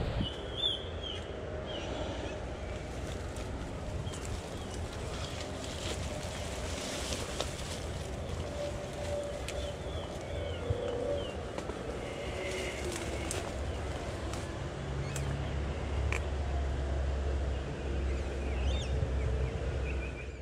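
Creek-side outdoor ambience: a steady low rumble of wind on the microphone, stronger near the end. Over it come a few faint, short bird calls and the brushing and rustling of footsteps through long grass and scrub.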